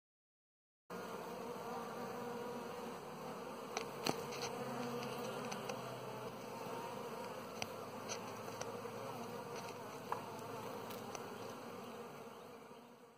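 A honeybee colony on an open brood comb buzzing steadily. The buzzing starts abruptly about a second in, and a few sharp ticks sound over it.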